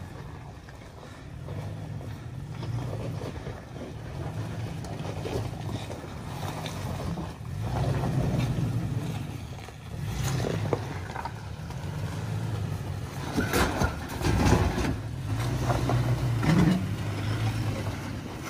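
Toyota Tacoma pickup's engine running at low revs while crawling over rocks, its drone rising and falling with the throttle. A few short knocks come in the second half as the tires work over the rocks.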